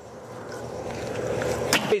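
Almond-wood fire burning in a kettle grill: a steady hiss that grows louder, with one sharp crackle near the end.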